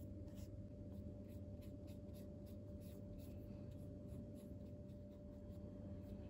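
Flat paintbrush scrubbing gouache across paper: faint, repeated short brush strokes, about two to three a second, over a steady low hum.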